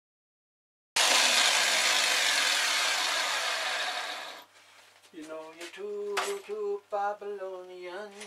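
A loud, steady hiss starts abruptly about a second in and cuts off after about three seconds. Then a man's voice sings in held notes that step up and down like a tune.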